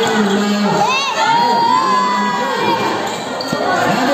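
Spectators shouting and cheering at a basketball game, many voices calling over one another, with a basketball being dribbled on the court.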